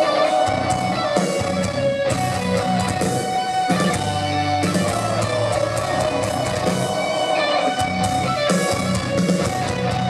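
Metal/hardcore band playing live: distorted electric guitars strumming over bass and pounding drums, loud and continuous, heard from the crowd through a festival PA.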